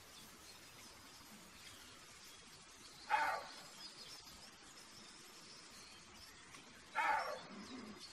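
Roe deer buck barking: two short barks about four seconds apart.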